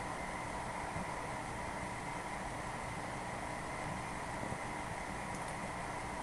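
Steady background hiss with a faint constant hum: room tone with no distinct sound event.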